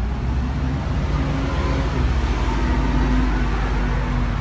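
City street traffic: a steady, loud rumble of passing motor vehicles with faint engine hum.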